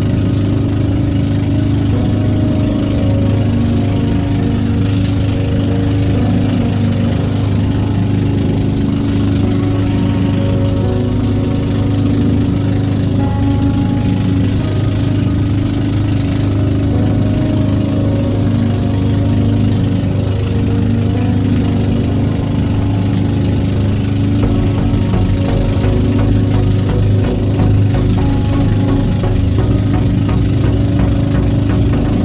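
Engine of a motorised outrigger boat (bangka) running steadily under way, a constant low hum with no change in speed. Background music plays over it.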